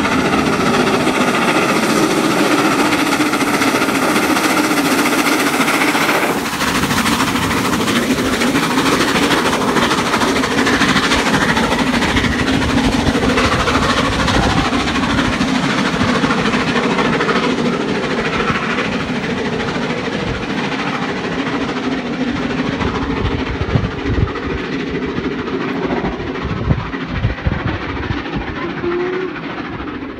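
LMS Royal Scot class 46100, a three-cylinder 4-6-0 steam locomotive, running with its train. After a sudden change about six seconds in, the train's coaches pass with their wheels clicking over the rail joints, and the sound fades near the end.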